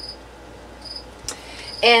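Faint short high-pitched chirps repeating about once a second, with a single click about a second and a half in.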